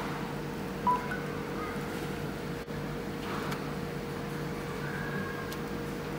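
A short electronic beep about a second in, then a few fainter short beeps and a longer faint tone near the end, over a steady low electrical hum.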